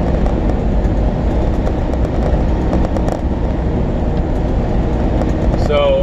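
Steady low engine and road noise inside the cab of a moving semi truck.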